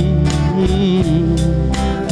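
Live band playing a slow pop ballad: a strummed acoustic guitar over a steady drum beat and bass, with a male voice singing a held note between lines.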